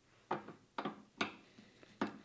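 Keyless drill chuck on a CAT40 tool holder being turned by hand to close its three jaws on a twist drill: four sharp clicks, about half a second apart.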